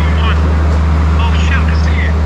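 Steady low drone of a diesel train idling at the platform, unchanging in pitch and loudness, with faint voices over it.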